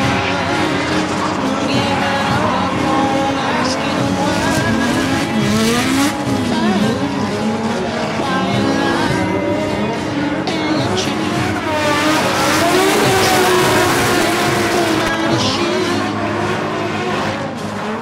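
Drift cars sliding sideways with engines revving up and down and tyres squealing, with background music mixed underneath.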